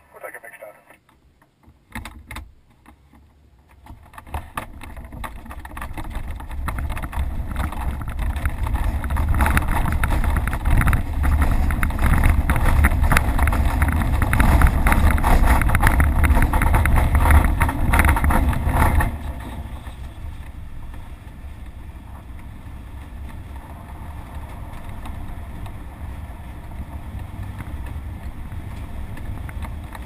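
ASK-21 glider's aerotow ground roll heard from inside the cockpit: a few clicks, then a deep rumble and rush of air building over several seconds and staying loud. About 19 seconds in it drops suddenly to a steadier, quieter rush of air.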